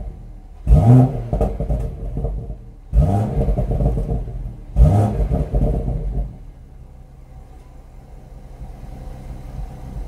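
BMW M140i's 3.0-litre turbocharged straight-six on its stock exhaust, heard at the tailpipes, revved three times in quick succession, each rev climbing and falling back. About six seconds in it settles to a steady idle.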